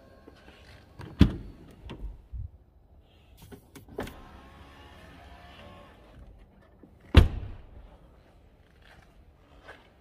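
Car doors of a Lamborghini Urus shutting: a heavy thump about a second in and a louder one about seven seconds in. In between, an electric power-window motor whirs for a couple of seconds as a frameless window moves.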